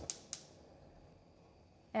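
Two light clicks about a quarter second apart, then near silence with a faint hiss: cubes of butter being dropped into a skillet on the stove.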